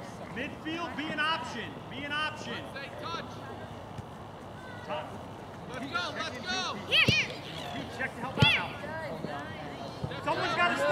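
Shouts and calls from players and spectators carrying across an open soccer field during play. Two sharp thumps in the second half are the loudest sounds.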